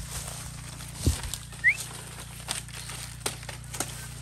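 Dry banana leaves and leaf litter crackling and rustling as the plants are handled and walked through, in scattered short clicks, with a dull thud about a second in. A short rising bird chirp comes just after the thud.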